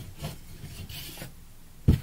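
Braided rope rubbing and scraping against wooden spars as it is wrapped around them, with a sharp knock just before the end.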